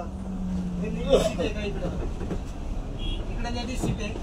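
City bus in motion heard from inside its cabin: a steady low rumble with a low drone through the first second and a half, under faint voices.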